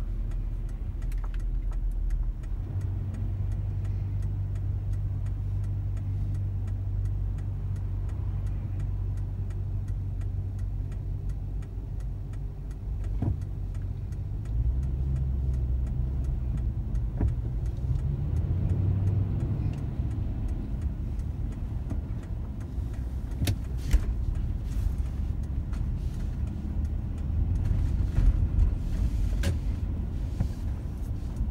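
Car engine and road noise heard from inside the cabin: a low steady hum while idling, then the car pulls away about halfway through and the engine note rises as it accelerates.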